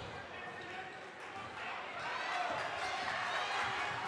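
Basketball dribbled on a hardwood gym floor during live play, under a low murmur of crowd voices in a large gym.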